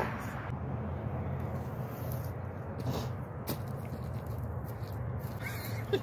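Outdoor background: a steady low rumble, with two soft clicks about three seconds in.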